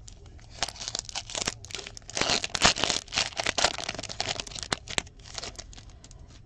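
Foil wrapper of a Fleer Showcase hockey card pack being torn open and crinkled by hand: a run of crackling rips and crinkles, loudest in the middle and dying away near the end.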